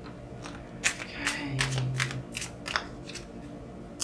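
Tarot cards being handled and shuffled in the hand: a series of short, sharp card snaps and flicks at irregular intervals.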